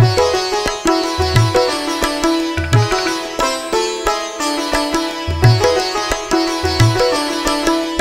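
Instrumental interlude with no singing: a fast plucked-string melody over a held drone, with deep drum strokes now and then.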